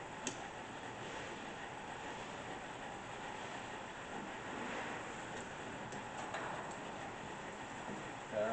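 Quiet, steady running of the Hardinge TFB precision lathe under power, with a sharp click about a quarter second in and a few light clicks around six seconds as the tailstock is handled.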